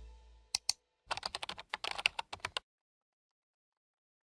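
Computer keyboard typing sound effect: two separate keystrokes, then a quick run of keystrokes lasting about a second and a half that stops abruptly.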